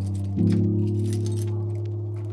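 Lo-fi hip hop music: sustained low chords that change about half a second in, with light ticks scattered over them.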